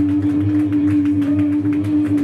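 A live hardcore band's amplified sound in a small room: one electric guitar note held steady and loud over a rumbling low end, with short sharp hits throughout.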